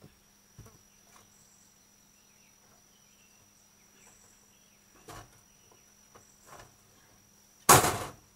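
Faint knocks and rustles of a rabbit being handled out of its hutch, then near the end one loud, sharp clatter lasting about half a second.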